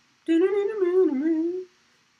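A man humming a short, wavering tune for about a second and a half, without words.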